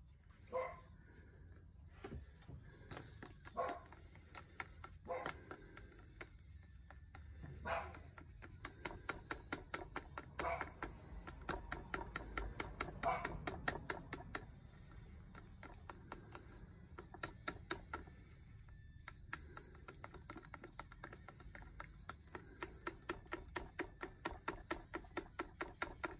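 Paint being stirred in a cup as it is thinned, with light clicks of the stirrer against the cup in an irregular rhythm that becomes busier from about a third of the way in.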